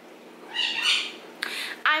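A pet animal calls out with a loud, high-pitched cry about half a second in, then gives a shorter second cry just before a woman starts speaking.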